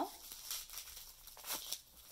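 Faint crinkling and rustling of plastic bubble wrap as a wrapped item is pulled out of a velvet drawstring pouch, with a few light crackles, the clearest about one and a half seconds in.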